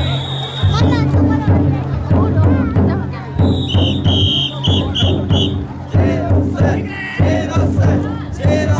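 Large taiko drum on a chousa drum float beaten in a steady, slow rhythm, with the bearers shouting and chanting over it. A whistle sounds one long blast at the start, then about four short blasts in the middle.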